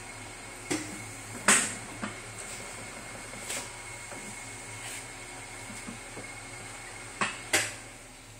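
Rondo automatic dough divider-rounder running its rounding motion at the minimal rotation setting: a steady low motor hum, with a few sharp clicks or knocks about a second in and twice near the end.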